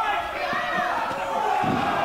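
Crowd voices shouting in a hall, and about three-quarters of the way in a short low thud as a wrestler is speared down onto the wrestling ring's canvas.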